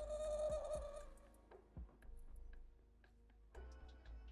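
Black felt-tip marker squeaking on paper for about a second as it colors in a small area, followed by fainter scratchy marker strokes and light ticks.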